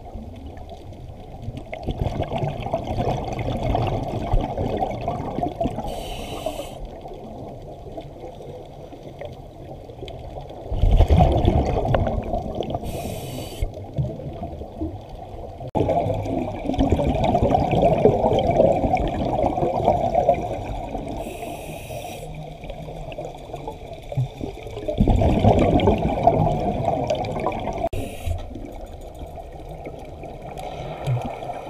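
A scuba diver breathing through a regulator, heard underwater: about four spells of exhaled bubbles lasting a few seconds each, each followed by a short hiss of inhaling.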